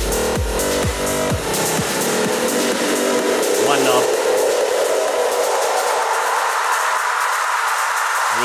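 Electronic dance loop played live from a Native Instruments Maschine, with a knob-driven 'instant buildup' macro effect. The kick drum, about two hits a second, cuts out less than two seconds in as the bass is filtered away, and a rising wash of noise swells in its place.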